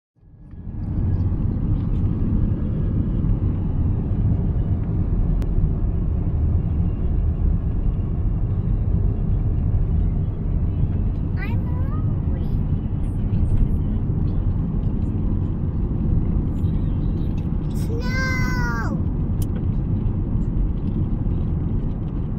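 Steady low rumble of road and engine noise heard inside a moving car's cabin. Near the end, a short high-pitched vocal cry sounds once.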